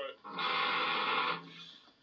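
An electric guitar chord struck about half a second in, ringing for about a second and then fading out, after the previous chord is cut off at the start.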